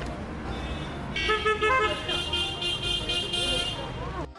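Vehicle horn sounding in short toots starting about a second in, over the low rumble of traffic on the hairpin bend.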